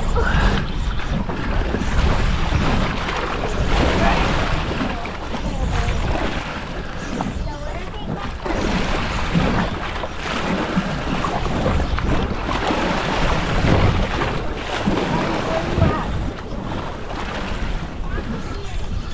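Wind buffeting the microphone over the steady wash of choppy open-ocean water against a small boat.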